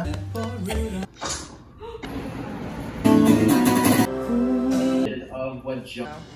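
Short clips cut one after another, changing about every second. There are voices, and about halfway through comes a louder stretch of music with an acoustic guitar.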